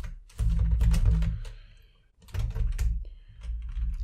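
Typing on a computer keyboard: rapid keystroke clicks in two bursts with a short pause between, each burst carried on a low hum.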